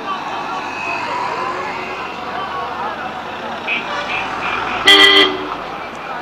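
Street traffic and crowd chatter, with a few short high beeps just after the middle, then one loud vehicle horn honk lasting about half a second near the end.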